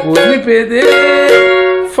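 Cavaquinho strummed in a pagode rhythm, steel strings ringing out chords with a sharp strum about every half second.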